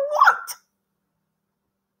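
A woman's voice trailing off about half a second in, followed by dead silence with no room noise at all.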